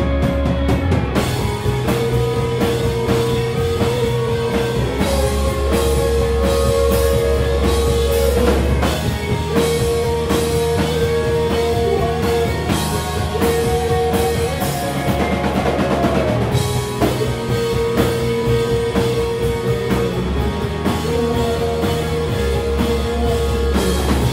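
Live rock band playing loudly on two electric guitars, electric bass and drum kit, with held guitar notes over the bass line. The drums and cymbals come in about a second in.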